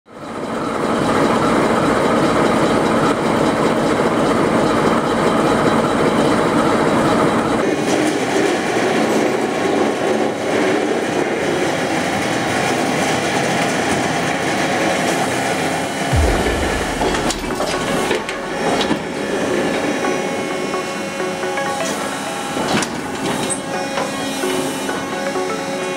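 Underfloor wheel lathe turning the wheel tyres of a class 751 diesel locomotive: the steel wheel rotates on the lathe while the tool cuts, a steady grinding, rolling noise. The noise changes about 8 s in, and there is a low thud about 16 s in.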